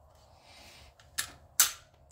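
A SIG Sauer P365 pistol being cleared by hand. Light metallic clicks come about a second in, then a loud, sharp metallic clack from the slide being worked.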